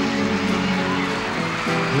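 Live band music with guitar, playing a slow country ballad accompaniment in a gap between sung lines.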